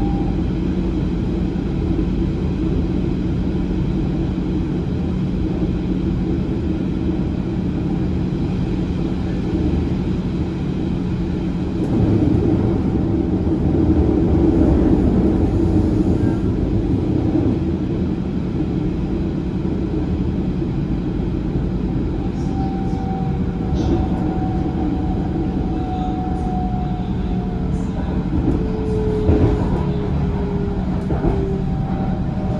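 Running noise of a rail vehicle heard from on board: a continuous rumble of wheels on track with a low steady hum. The rumble swells for a few seconds around the middle, and in the second half faint whining tones slowly fall in pitch.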